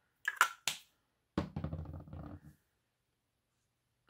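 Handling noise from a makeup pump bottle and hands: three or four sharp clicks and taps in the first second, then about a second of low rubbing or rumbling.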